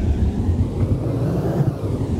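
A rushing whoosh that swells to a peak about a second and a half in and then falls away, over the steady low rumble of the car's road noise in the cabin.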